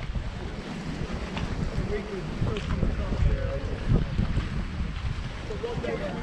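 Wind buffeting the microphone in uneven gusts, with faint voices of people talking in the background.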